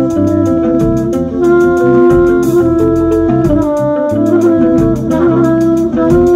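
Jazz quartet of trumpet, electric guitar, electric bass and drums playing live: long held notes that step to new pitches every second or two over a slow bass line and steady cymbal strokes.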